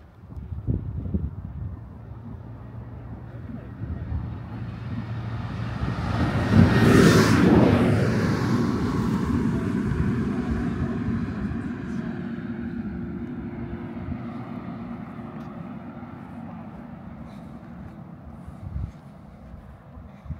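A motor vehicle driving past on the road: its tyre and engine noise builds over a few seconds, is loudest about seven seconds in with a falling pitch as it passes, then fades away slowly.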